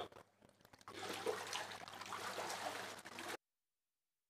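Water trickling and splashing as people climb out of a baptismal immersion pool, faint and noisy. It cuts off abruptly a little over three seconds in.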